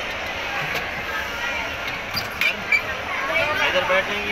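Indistinct background voices and general hubbub in a shopping-mall hall, with no clear words. A few short sharp knocks come about two and a half seconds in.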